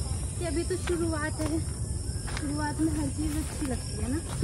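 People talking quietly and indistinctly, over a steady high-pitched hiss of insects in the grass and low rumble.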